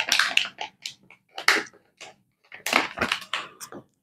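Metallised anti-static plastic bag crinkling in irregular bursts with short pauses, as hands open it and draw a circuit board out.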